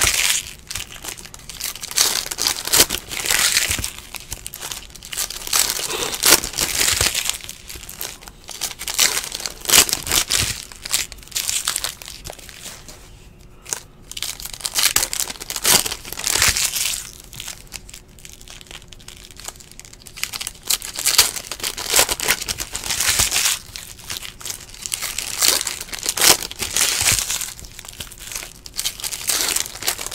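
Foil wrappers of 2017-18 Donruss Basketball card packs crinkling and tearing as they are ripped open by hand, in repeated bursts with short lulls.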